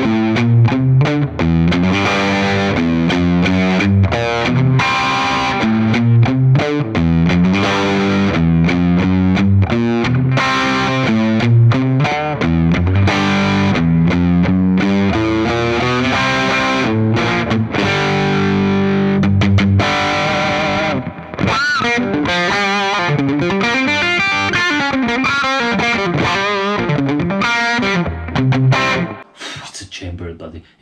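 2008 Gibson Les Paul Standard Plus electric guitar on its bridge humbucker through a Fender '65 Reissue Twin Reverb amp, playing punchy rock chords and riffs. About twenty seconds in it moves to single-note lead lines with string bends, then stops near the end.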